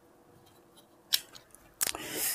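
A few sharp plastic clicks from a relay and its socket being handled: one about a second in and a quick cluster near the end.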